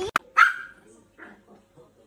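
A single short, sharp bark from a small dog just after a click, followed by faint scattered sounds.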